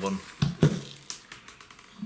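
Coins and stainless steel tumbling shot clicking against each other in a plastic strainer as a hand picks through them: two sharper knocks about half a second in, then lighter clicks that fade out.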